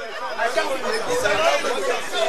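Chatter of several people talking over one another, with no single clear voice.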